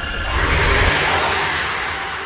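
Trailer sound design: a rushing whoosh swell that builds about half a second in and fades toward the end, over a low pulsing bass.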